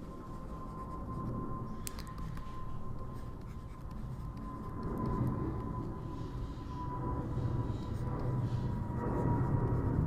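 Handwriting strokes: a pen scratching across a writing surface in short runs, over a low hum and a faint steady tone.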